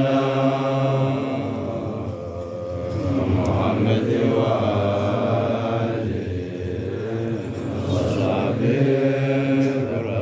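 Men's voices chanting an Ethiopian Islamic menzuma together in a Sufi hadra, with long held notes over a steady low drone. The chant swells and eases in waves.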